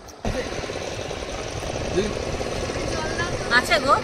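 Boat engine running steadily with a fast even chug, starting abruptly about a quarter second in. A person's voice is heard briefly near the end.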